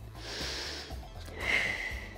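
A woman's long, audible exhale through the mouth, then about a second later a shorter breath drawn in, paced to a plank-to-dolphin core exercise, over background music.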